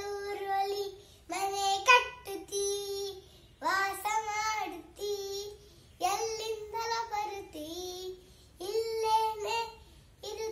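A young boy singing a Kannada song alone, without accompaniment, in short phrases with brief pauses between them.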